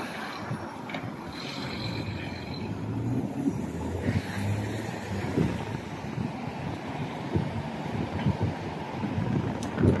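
City street traffic: a steady wash of cars driving through an intersection, swelling a few seconds in, with wind noise on the phone's microphone.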